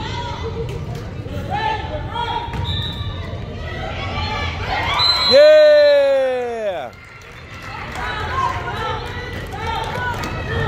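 Spectators' chatter in a large gym, with a loud, long call about five seconds in that falls steadily in pitch for about a second and a half and then cuts off suddenly.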